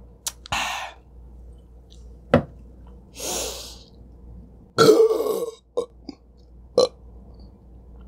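A woman burping loudly about five seconds in, just after drinking from a can, with a few shorter breathy noises and a small click earlier on.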